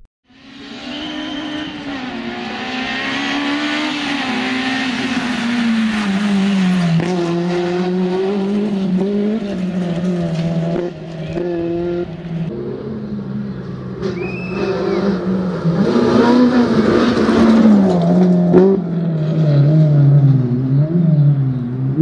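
Honda Civic Type R rally car driven hard on a gravel stage: its engine note rises and drops repeatedly with throttle and gear changes, over a hiss of tyres and gravel, getting louder in the second half as the car comes close.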